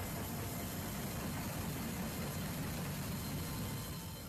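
Steady mechanical drone with a hiss over it, the background noise inside a cargo aircraft's hold, holding an even level without starts or stops.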